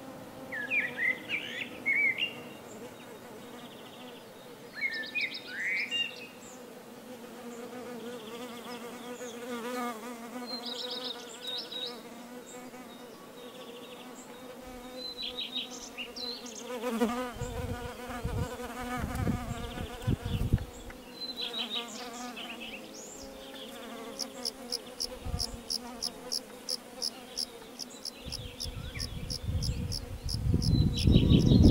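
Bees buzzing in a steady drone that wavers in pitch as they fly close. Short bird chirps are scattered over it, with a few low rumbles in the middle, and a fast, regular high-pitched chirping in the last few seconds.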